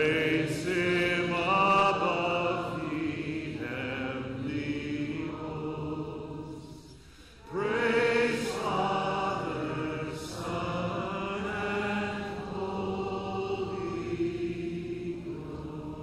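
A man's voice singing slowly, in two long phrases of held notes, with the second phrase starting about halfway through.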